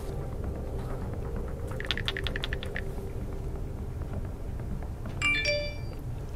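Phone keypad clicks from passcode entry on an iPhone, a quick run of about ten ticks about two seconds in. A short electronic alert chime of several steady tones follows near the end, as the phone's 'Important Camera Message' warning pops up.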